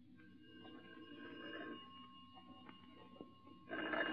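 A telephone ringing as a radio-drama sound effect: a faint ring about a second in, then a louder ring starting near the end.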